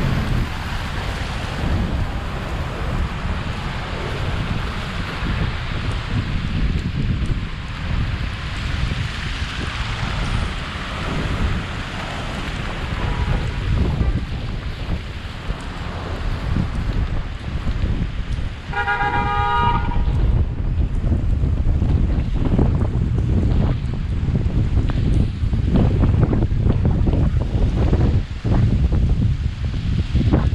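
Traffic at a city intersection, with wind rumbling on the microphone. A car horn honks once for about a second two-thirds of the way through, after a fainter, shorter honk a few seconds earlier.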